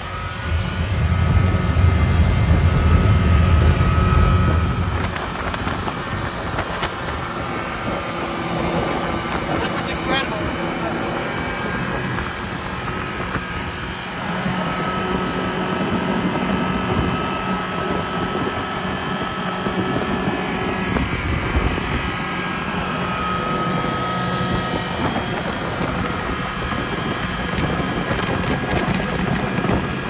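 Honda 115 four-stroke outboard motor running at speed, pushing the boat along, with wind noise on the microphone. The low end is louder over the first five seconds, then the sound settles to a steady level.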